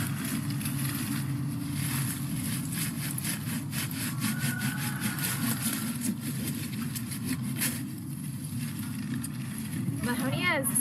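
Hand pruning saw cutting through a woody shrub stem close to the ground, in quick back-and-forth strokes that start about two seconds in and stop near the end.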